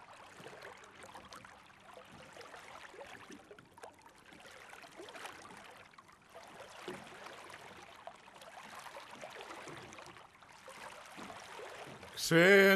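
Faint water lapping and trickling, a soft wash of noise dotted with many small irregular ticks of tiny splashes.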